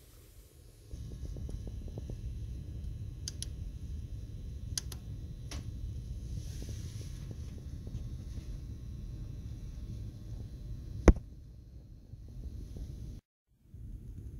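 Steady low background rumble with a few light clicks, and one sharp click about eleven seconds in. The sound drops out for a moment near the end.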